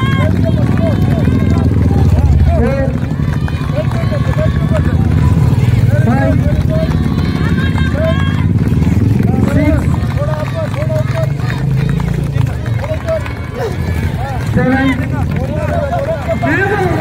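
Motorcycle engine running at low speed as the bike rolls slowly forward, a steady low rumble under people talking throughout.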